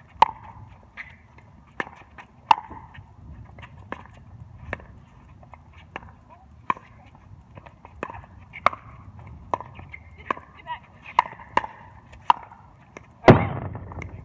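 Pickleball rally: a plastic ball struck back and forth by hard paddles, a sharp hollow pock about every two-thirds of a second, some hits louder and nearer than others. A much louder thump comes near the end.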